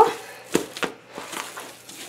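A hand kneading and slapping tamale dough of corn masa and lard in an aluminium bowl: a few soft thumps, the two clearest about half a second and just under a second in.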